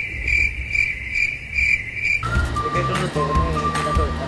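Cricket-chirping sound effect, a high pulsing chirp about two and a half times a second, the stock gag for an awkward silence; it cuts off abruptly about two seconds in and background music takes over.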